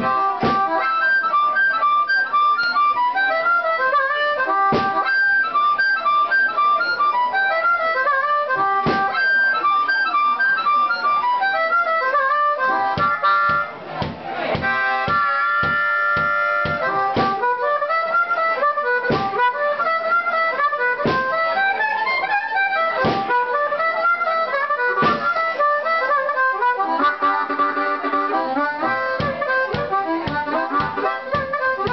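Harmonica played into a hand-held microphone: an instrumental break of quick note runs and held chords, with a bass drum beat keeping time every second or two.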